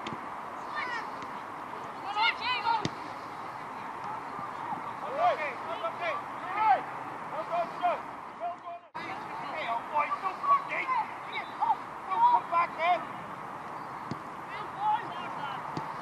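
Indistinct shouts and calls of young players and spectators ringing out across an outdoor football pitch, many short separate cries over a steady open-air background. The sound cuts out briefly about halfway through.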